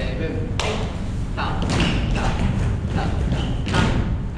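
A few irregular thuds, the sharpest near the end, mixed with a man's voice over a steady low rumble.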